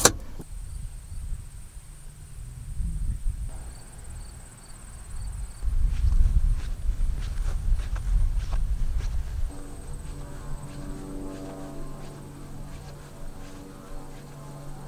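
Low rumbling noise with a steady high-pitched insect buzz over it. About ten seconds in, the rumble drops away and soft background music with held notes comes in.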